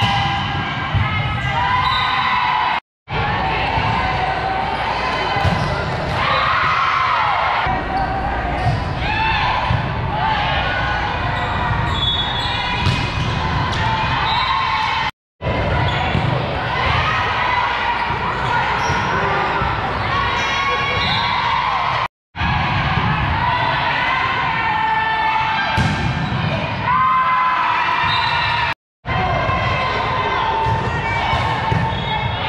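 A volleyball rally in a large echoing gym: the ball is struck repeatedly over a steady din of players calling and spectators' voices. The sound drops out completely four times for a moment.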